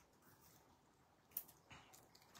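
Near silence with a sharp click about one and a half seconds in and a fainter one just after. These come from foam adhesive dimensionals being peeled off their backing sheet and pressed onto die-cut cardstock.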